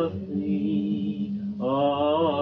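Devotional chanting: voices sing a slow hymn line over a steady low held note. A fuller voice comes in about one and a half seconds in.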